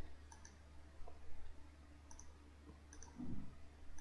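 Faint computer mouse clicks, a few quick double clicks spread through, over a low steady hum.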